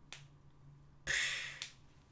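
A faint click, then a short breathy hiss about a second in that fades within half a second, like a sharp exhale close to a headset microphone.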